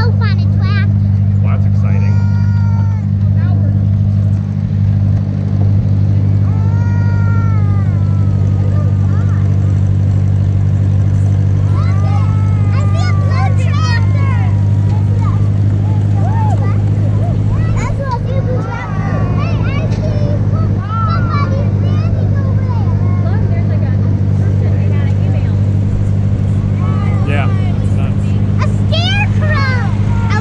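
Farm tractor engine running at a steady speed while towing a hay wagon: a constant low drone, with children's voices over it.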